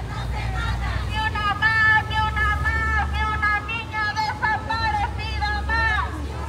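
High-pitched women's voices shouting a protest chant, starting about a second in, with drawn-out, loud cries. A low steady rumble runs underneath.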